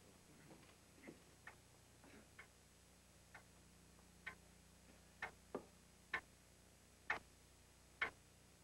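Near silence in a quiet room, broken by a series of faint, sharp clicks or ticks, irregularly spaced at first and then about one a second.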